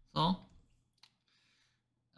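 A single short click about a second in, then a faint brief scratching: a stylus tapping and writing on a drawing tablet as a word is handwritten on screen.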